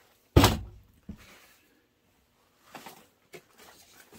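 A loud thump against a plastic storage tote, then a few faint rustles of crumpled newspaper and junk mail being pushed down inside it.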